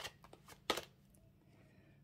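Tarot cards handled and drawn from a deck: a few short, light flicks of card against card in the first second, the sharpest just under a second in.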